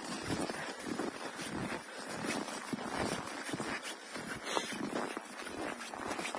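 Footsteps on packed snow, faint and irregular, as several people walk along a snowy path.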